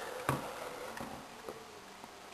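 Faint handling clicks: a sharp tick about a third of a second in and a softer one later, as hands touch the H2C cooler's housing, over quiet room tone.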